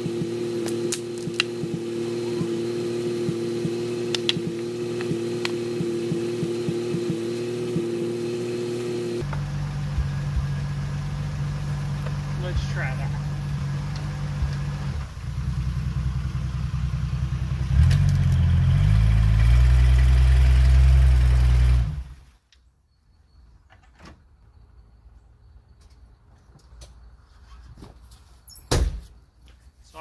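Jeep Wrangler engine running: a steady hum at first, then revving hard under load as the Jeep tries to climb its tyre onto a tree stump. It is loudest over the last few seconds before it cuts off suddenly about two-thirds of the way through, followed by a few faint knocks.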